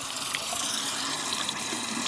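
Bathroom sink tap running in a steady stream.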